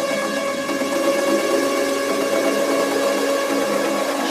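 Melodic techno in a breakdown: sustained synth pad chords held steady, with no kick drum or bass.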